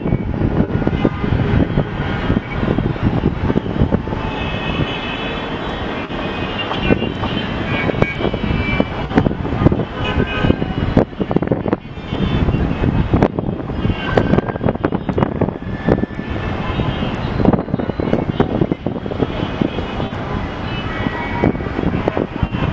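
Steady city traffic rumble heard from high above the streets, dense and continuous, with brief high tones scattered through it.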